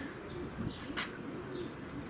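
Racing pigeons cooing, with a short sharp click about halfway through.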